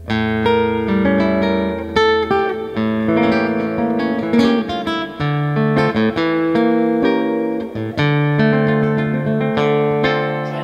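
Godin Multiac Nylon SA nylon-string electric-acoustic guitar played fingerstyle: a flowing passage of plucked melody notes over held bass notes.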